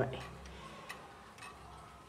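Junghans pendulum wall clock ticking faintly and evenly, about two ticks a second.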